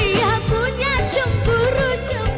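Dangdut song: a woman sings an ornamented melody with wavering pitch over a band with bass and regular drum strokes.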